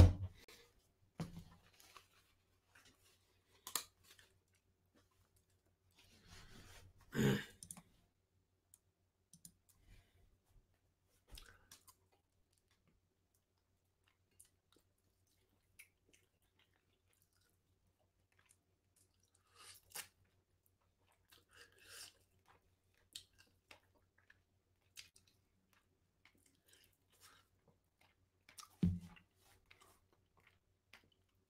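Sparse small clicks and knocks of someone handling headphones and computer gear close to the microphone, with a louder rustling bump about seven seconds in and a dull thump near the end, over a faint low electrical hum.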